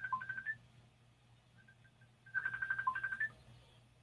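Electronic ringtone of an incoming call: a quick pulsing beep pattern ending on a higher note, heard twice about two seconds apart, quiet.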